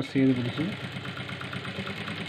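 Industrial single-needle sewing machine running steadily, stitching piping onto a churidar sleeve, with a fast, even stitch patter.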